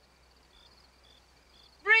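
Faint crickets chirping: a high, steady pulsing trill with short chirps about twice a second. A woman's loud shout breaks in near the end.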